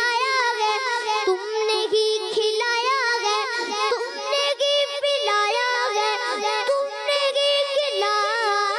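A boy singing an Urdu naat (devotional poem) solo into a microphone, a single high voice with long held notes and wavering ornamented turns.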